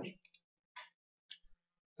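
A few faint, short clicks of a computer mouse, spaced out with quiet between them.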